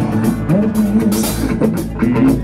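Live rock band playing, with a drum kit and cymbals hitting over bass and electric guitar.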